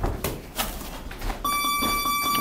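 Punches thumping on gloves and bodies during sparring, then about one and a half seconds in a boxing gym round timer gives a steady electronic beep, the signal that ends the round.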